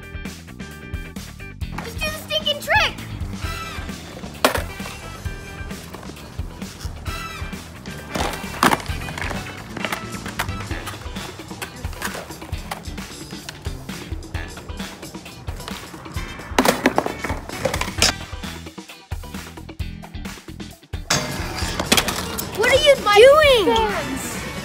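Background music over a skateboard on concrete, with a few sharp clacks of the board spread through the stretch as a pop shove-it is popped and landed.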